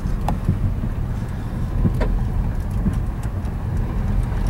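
Car running and rolling slowly, heard from inside the cabin: a steady low engine and road rumble with a few faint ticks.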